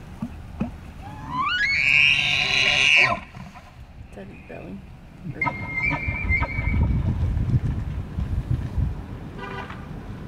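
Bull elk bugling in the rut: a call that rises steeply into a loud, high whistle, held for about a second and then cut off. About five seconds in comes a second, shorter high call with a run of low grunts under it.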